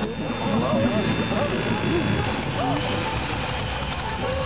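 Cartoon sound effect of a soda-filled stomach rumbling and gurgling, a steady fizzing rumble with wobbling, warbling gurgles through it.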